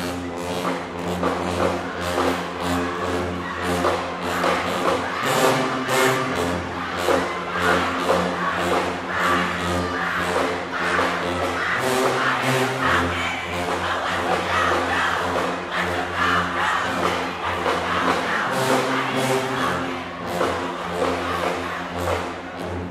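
High school marching band playing a stand tune: sousaphones holding a low bass line under saxophones, clarinets and brass, over a steady drum beat. The music starts suddenly right at the beginning.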